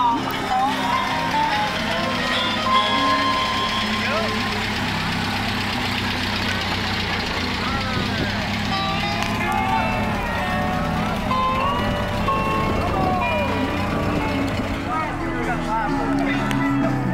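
A parade vehicle passing slowly, mixed with music and people's voices. A rushing noise comes up during the middle of the stretch, as the vehicle goes by.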